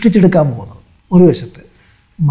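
Only speech: a man talking in Malayalam, in two short phrases with brief pauses.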